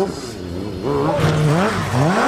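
Several MotoGP racing motorcycles' engines revving hard, the pitch sweeping up and dropping back with the throttle and gear changes. It dips briefly about half a second in, then builds again.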